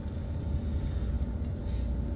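Outdoor background rumble, steady and low, with a faint steady hum above it.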